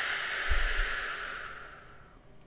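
A woman's long, deep breath out, a steady hiss that fades away over about two seconds, with a low thump about half a second in.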